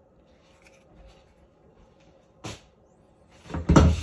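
A short sharp click about two and a half seconds in, then a louder knock and clatter near the end: kitchen items, a cupboard door or the phone, handled at the counter.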